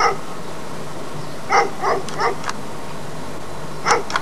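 A dog barking in short barks: one at the start, three in quick succession about a second and a half in, and one more near the end.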